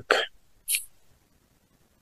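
A man's short, sharp intake of breath through the nose, once, about three quarters of a second in, after the tail of a spoken word; then near silence.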